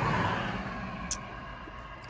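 Fingers rubbing and working through locs of hair close to the microphone, a soft rustling that gradually fades away.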